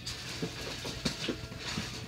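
Small plastic toy figures and accessories clicking and rattling against each other as a hand rummages through a storage container, in a few irregular taps and rustles.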